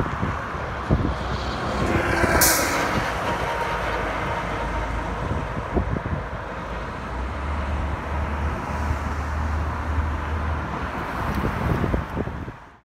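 Street traffic: cars and a city bus passing on a wide multi-lane road, a steady rumble with a brief hiss about two and a half seconds in.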